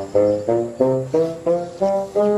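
Background music: a low brass instrument playing a run of short, detached notes, about three to four a second, stepping up and down in pitch.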